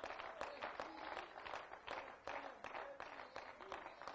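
Faint, scattered clapping from a small congregation, several uneven claps a second, with quiet voices underneath.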